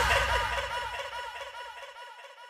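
The closing effect of an electronic dance remix: a short warbling blip that arches down in pitch, repeating about four times a second like an echo and fading out.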